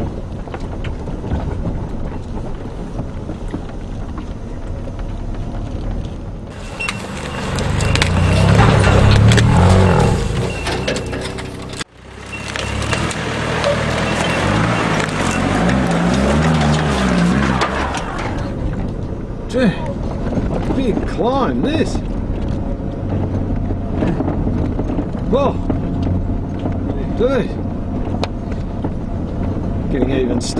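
A four-wheel drive's engine running on a dirt track, then revving hard through two long stretches, with the tyres spinning and throwing loose dirt on a steep climb. The first stretch cuts off suddenly at an edit. The engine then settles to a steadier, quieter run.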